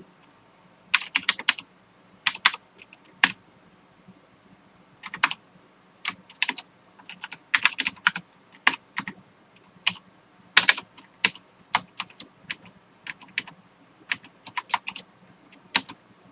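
Typing on a computer keyboard: bursts of keystrokes separated by short pauses.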